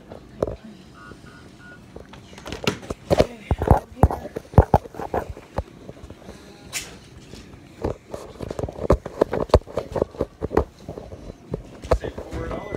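Knocks and rubbing from a phone being handled close to its microphone, with indistinct voices in the second half. Three short faint beeps sound about a second in.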